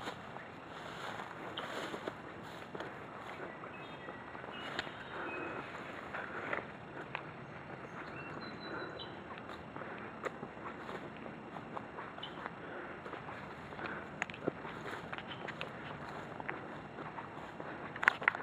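Footsteps and grass and brush rustling against legs and the camera while walking a narrow overgrown trail, with irregular light crunches and brushing sounds. A few faint, short high chirps come through a few seconds in and again around the middle.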